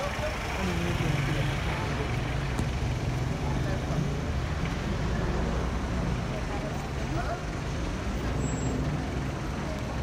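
Motor vehicle engine running steadily at low speed, heard from inside the vehicle, over street noise with faint voices in the background.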